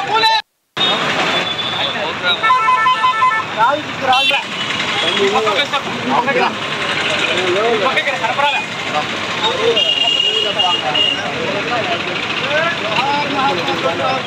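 Busy street ambience: a crowd of overlapping voices with passing traffic, and a vehicle horn sounding about two and a half seconds in, with a second, higher horn tone around ten seconds. The sound cuts out briefly just after the start.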